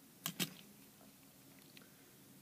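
Two short clicks about a fifth of a second apart from the hard plastic body of a toy train engine being turned over in the hand, then quiet room tone.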